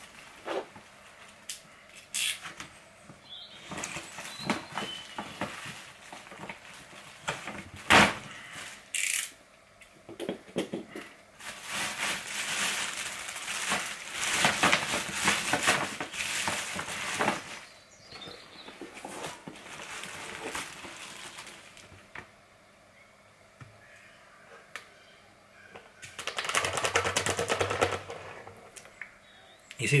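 Plastic bag of ion-exchange resin crinkling and rustling as it is opened and handled, with a few sharp clicks, the loudest about eight seconds in. Near the end, a longer stretch of rustling as a scoop cut from a plastic bottle digs into the resin beads.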